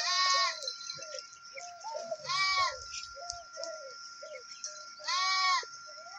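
A goat bleating three times: loud, quavering calls about half a second each, roughly two and a half seconds apart.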